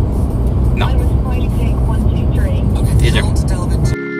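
Steady low road and engine rumble inside the cabin of a moving car, with a few brief, faint voice sounds.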